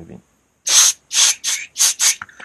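Aerosol spray can with a thin red extension straw giving several short hissing bursts in quick succession into a folding knife's frame.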